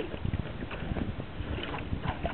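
Water lapping and slapping against the hull of a stand-up paddleboard, with wind rumbling on the microphone.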